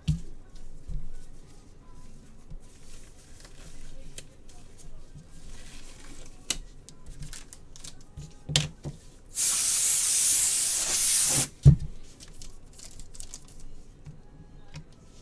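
Gloved hands handling a trading-card box and its packaging: scattered small clicks and rustles, then a steady hiss lasting about two seconds as the wrapping is pulled, ending in a sharp knock.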